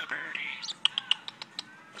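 Pet European starling singing: a rising whistle, then a quick run of sharp clicks and short high chirps.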